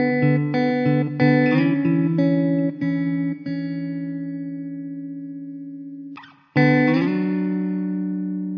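Background music on a plucked string instrument: a quick run of notes over the first few seconds, left to ring and fade. After a short break, a new chord is struck near the end and rings out.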